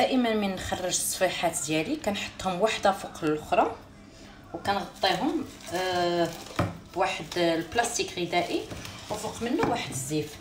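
A woman speaking, with a short pause about four seconds in.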